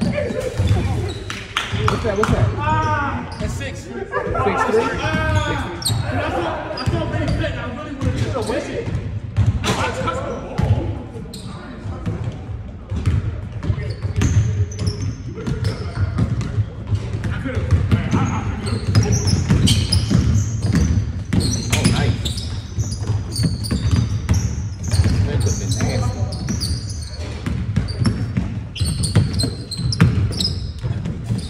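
A basketball bouncing and being dribbled on a hardwood gym floor during play, with irregular thuds, amid players' voices in a large, echoing gym.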